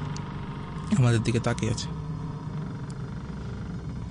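A man's voice speaking Bengali in one short phrase about a second in, over a steady low background drone.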